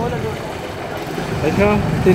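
Street traffic noise with a motorcycle engine idling, a steady low hum; a voice starts speaking near the end.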